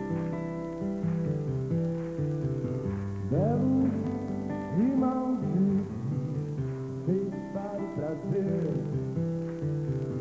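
Rock song with strummed acoustic guitar and band backing, a male lead vocal coming in about three seconds in.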